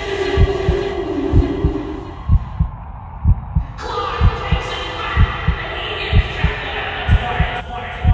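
Heartbeat sound effect: low double thumps, lub-dub, about once a second, over a steady droning hum.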